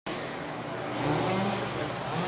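A motor vehicle running nearby amid steady outdoor traffic noise, growing a little louder about a second in.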